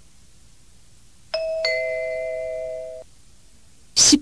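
Two-note electronic 'ding-dong' chime: a higher tone about a second in, a lower one just after, both held together and stopping about three seconds in. It marks the break between items of a recorded English listening test.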